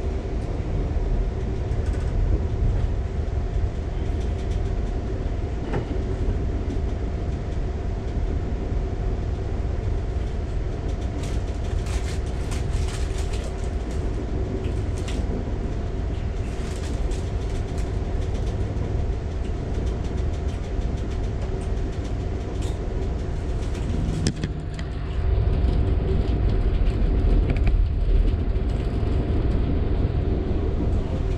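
Amtrak passenger train rolling at speed, heard from inside the passenger car: a continuous low rumble with a steady hum over it. A run of sharp clicks comes in the middle, and the rumble grows louder about 25 seconds in.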